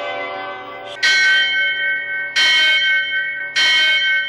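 A large temple bell struck three times, about a second and a quarter apart, each stroke ringing on with clear steady tones; the first second holds the fading ring of earlier tones.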